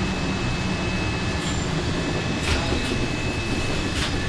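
City bus heard from inside while driving: steady engine and road noise, with a thin steady high whine. A few brief rattles come about midway.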